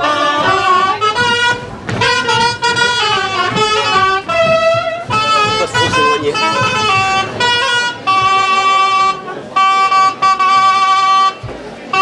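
Live folk dance tune played on wind instruments, a bright, quick melody in several voices that settles into a few long held notes later on, then pauses briefly near the end.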